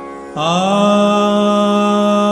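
Male Hindustani classical vocalist singing Raga Jog. After a brief breath in which only a faint drone continues, his voice slides up into a note about a third of a second in and holds it long and steady.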